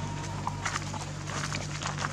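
Dry leaf litter rustling and crackling in short, irregular bursts as monkeys move over it, with a steady low hum underneath.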